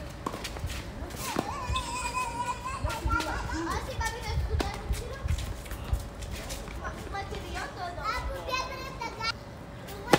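Tennis balls struck by rackets and bouncing on a hard court during a doubles rally: several sharp pops a second or more apart. High children's voices call out in the background.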